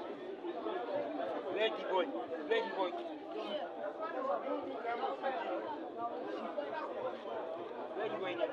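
Chatter of many overlapping voices from players and seated spectators, with no single voice clear. A few louder calls stand out between about one and a half and three and a half seconds in.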